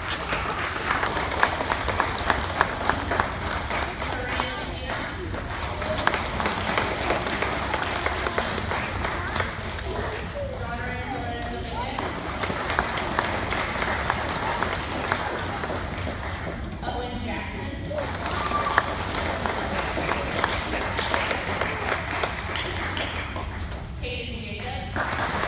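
An audience applauding at length with voices mixed in. The clapping breaks off twice, briefly, about ten and seventeen seconds in, when a single voice can be heard.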